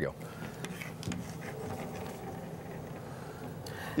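Quiet studio room tone with a faint steady low hum and no distinct event.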